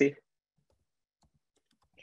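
A spoken word ends, then near silence with a few faint, scattered clicks.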